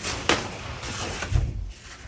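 Large sheets of specialty paper rustling and crinkling as they are pulled from a box and unfolded, with a dull thump about one and a half seconds in.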